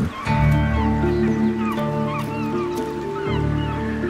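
Documentary score music of steady held notes, with short, high bird calls scattered over it.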